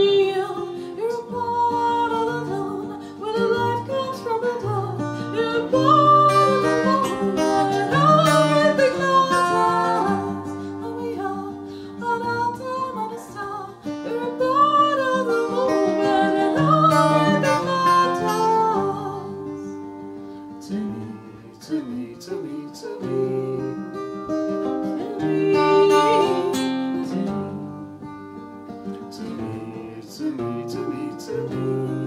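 Strummed acoustic guitar with a woman singing long, gliding notes into a microphone. The voice drops out for a few seconds about two-thirds of the way through, then comes back over the guitar.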